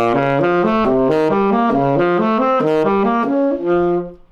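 Tenor saxophone playing a quick run of seventh-chord arpeggios up through each mode of the melodic minor scale (major scale with a flattened third), ending on a longer held note.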